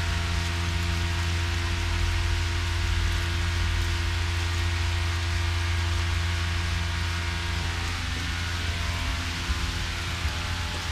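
Electric overhead hoist running steadily with a low hum as it lowers a car body into a hot tank, over an even rain-like hiss; the hoist's tones stop about eight seconds in.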